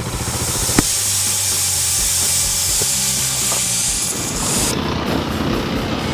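Dirt bike engine running while riding a dirt trail, under a loud hiss that drops off sharply about three-quarters of the way through.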